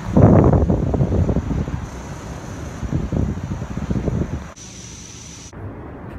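Wind buffeting a phone's microphone: a loud, gusty low rumble that drops away about four and a half seconds in.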